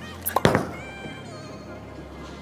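A Purple Hammer bowling ball released and landing on the lane: a couple of sharp thuds close together about a quarter to half a second in. Background music plays underneath.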